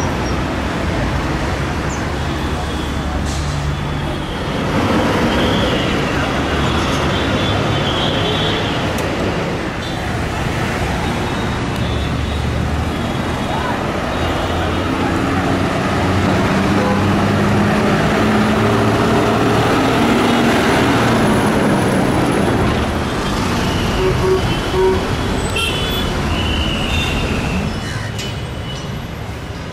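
Busy city street traffic: engines running in a steady din, with vehicle horns tooting now and then.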